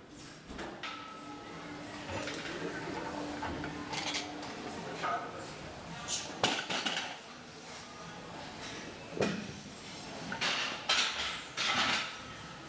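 Gym background with distant voices and several sharp metallic clanks of weights and barbell plates, most of them in the second half.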